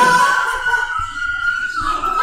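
A person holding one long, high-pitched yell at a steady pitch that breaks off near the end, with a couple of dull low thumps underneath.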